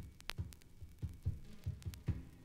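Sparse percussion from a jazz-rock recording: a steady low beat about three to four times a second, with sharp high clicks over it.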